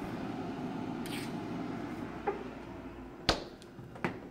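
Refrigerator freezer door shut with a single sharp thump about three seconds in, after a steady rushing noise while the freezer stands open.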